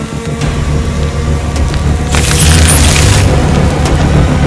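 Action-film soundtrack: a deep, rumbling score that swells in loudness. About two seconds in, a loud noisy hit lasts about a second.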